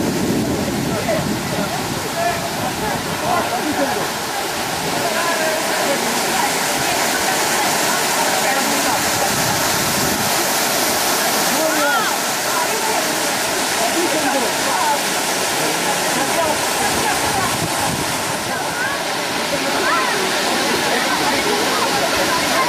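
Steady rush of a waterfall, with faint voices of people talking under it.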